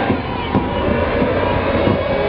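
A large crowd of marchers shouting and chanting together in a loud, continuous roar of voices, with a couple of brief sharp knocks.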